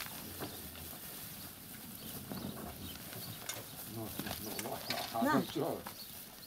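A flock of sheep crowding and jostling on straw-covered ground, with scattered light clicks of hooves and rustling and a few short, faint calls.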